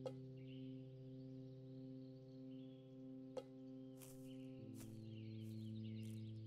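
Quiet film-score music: a held, droning chord that shifts to a new chord a little past the middle. Faint bird chirps and a few soft clicks sit above it.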